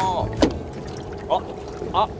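Steady low hum of a boat at sea with a wash of wind and water, broken by one short sharp sound about half a second in and a brief vocal exclamation near the end.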